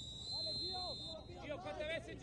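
Referee's whistle blown once in a steady blast lasting about a second, calling a foul. Players shout on the pitch throughout.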